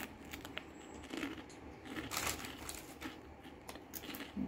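Crunchy pizza-flavoured polvilho (cassava-starch) biscuits being chewed close to the microphone: quiet, irregular crunches.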